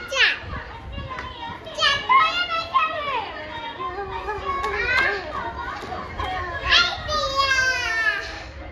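Young children playing and calling out without words, their high-pitched voices squealing and sliding up and down in several loud outbursts.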